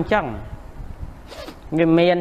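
A man's voice giving a sermon: a phrase that trails off falling in pitch, a pause with a short hiss in the middle, then a new phrase of long, drawn-out syllables starting near the end.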